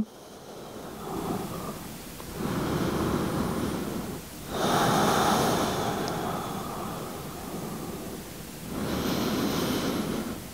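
A woman breathing slowly and deeply, several long breaths in and out, the loudest about halfway through.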